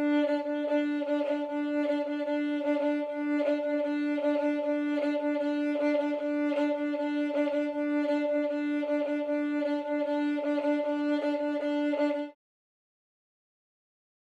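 Solo fiddle played in an Old Time shuffle bowing pattern, holding one steady pitch while quick, evenly repeating bow strokes give the eighth notes a rhythmic drive. It cuts off abruptly near the end.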